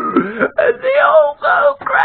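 A man laughing in loud, wailing peals, his voice sliding up and down in pitch, broken into three or four stretches.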